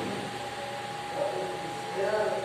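Faint, indistinct voices over a steady, constant tone and background hiss.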